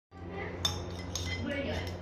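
Metal spoons clinking against a plate as children eat from it: a few sharp, separate clinks over a low steady hum.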